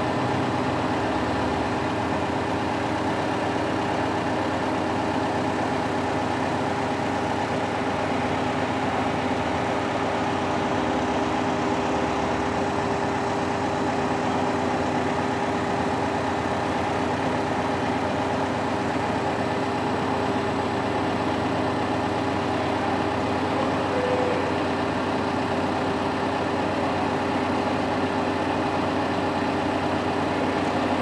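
Liebherr LTM 1220-5.2 mobile crane's diesel engine idling steadily.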